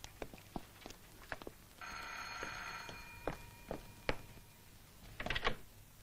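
An electric bell rings for about a second, starting a little under two seconds in, with a faint ringing tail. Scattered light knocks and steps sound around it.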